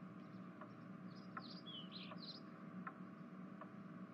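Faint background ambience: a few quick bird chirps about a second in, over soft regular ticks a little under a second apart and a steady low hum.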